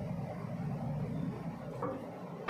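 Steady low background hum of a small room, with no speech.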